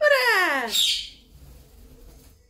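Alexandrine parakeet giving one loud call about a second long that slides steadily down in pitch, with a shrill edge near its end.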